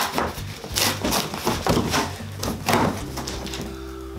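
Cardboard bike box being ripped open by hand: a run of irregular tearing and scraping sounds as the flaps are pulled apart. Steady background music tones come in near the end.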